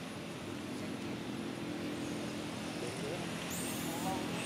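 Steady low drone of a distant motor engine, with a few faint high chirps near the end.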